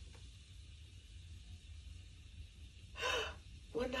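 Low room hum, then about three seconds in a woman's single short, sharp breath, a gasp, just before the weight reading is spoken.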